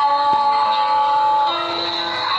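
A man singing, holding one long note that ends about one and a half seconds in and is followed by a lower note, heard through a phone's speaker.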